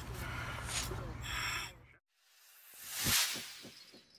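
Outdoor background with indistinct voices and a low hum, which cuts off sharply about halfway through. After a moment of silence comes an end-card sound effect: a whoosh that swells and fades, peaking about a second after the cut, with a string of evenly spaced tinkling chimes trailing away.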